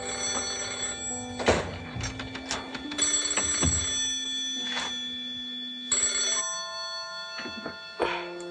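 Telephone bell ringing in repeated bursts about every three seconds, over a film score of sustained notes that shift in pitch, with a few sharp hits.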